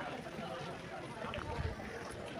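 Indistinct voices with no words that can be made out, over a steady noisy background, with a short low rumble about one and a half seconds in.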